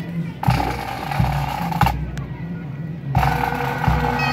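Pipe band snare drums playing two introductory rolls with bass drum strikes, the count-in that brings the bagpipes in. The first roll lasts about a second and a half, and a shorter one follows after a pause of about a second.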